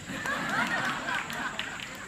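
Soft laughter from several people at once, strongest in the first second and then fading.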